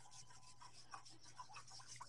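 Faint, irregular scraping and rubbing of a kitchen utensil against cookware, short scratchy strokes a few times a second.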